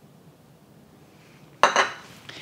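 A kitchen utensil clinks once against a dish about one and a half seconds in, ringing briefly; before that there is only quiet room tone.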